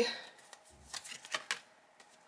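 Tarot cards being handled and laid down on a tabletop: a few light card slaps and slides about a second in.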